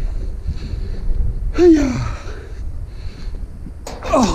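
A man's short breathy vocal sound, falling in pitch, a little before halfway through, over a steady low rumble; a single sharp click just before the end.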